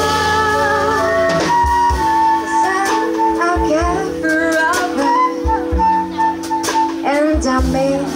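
Live jazz band playing: a woman sings over flute, electric bass and drum kit, with long held notes that waver in pitch.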